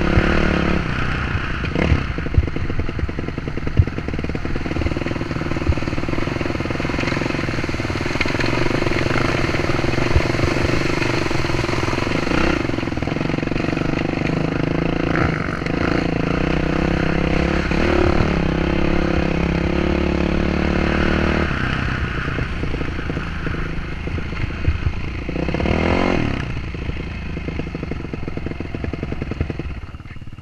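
Dirt bike engine running as the bike is ridden over a rocky riverbed, heard from the rider's helmet. About two-thirds through, the engine note drops. It swells briefly a few seconds later, then eases off as the bike slows to a stop.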